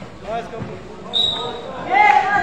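Shouting voices from players and spectators at a basketball game, cut across about a second in by one short, steady, shrill blast of a referee's whistle.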